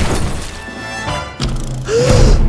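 A crash of breaking glass and wood right at the start, with orchestral trailer music running on under it and another hit near the end.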